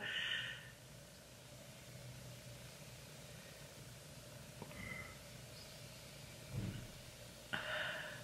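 Quiet room with a person's faint breathing: a short breathy sound just after the start and another near the end. A soft low thump comes shortly before the last one.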